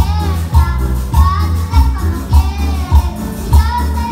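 Live band music played loud through a PA, with a steady bass beat about every 0.6 seconds and a child's voice singing the melody.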